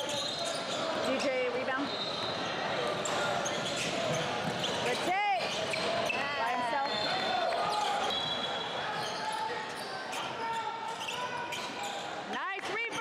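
Live basketball game sound in a large gym: the ball bouncing on the hardwood floor and sneakers squeaking, with voices of players and spectators carrying through the hall.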